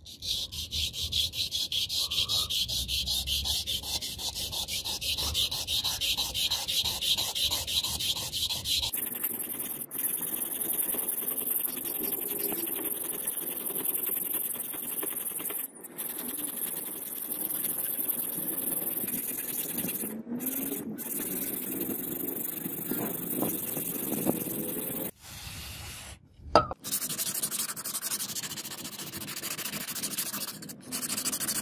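Small handheld sharpening stone rubbed back and forth along the edge of a steel knife blade held in a vise, a steady scraping with quick even strokes. The stroke sound changes about nine seconds in and drops out briefly a few times.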